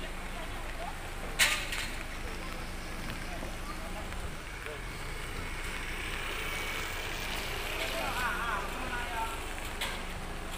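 Debris being cleared, heard as a single sharp knock or clatter about a second and a half in and a lighter one near the end, over a steady low hum and faint voices.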